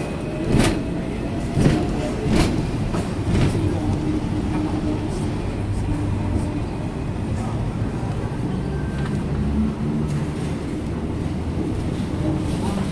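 Hong Kong double-decker tram running along street track, heard from on board: a steady rumble and hum, with several sharp clunks in the first four seconds.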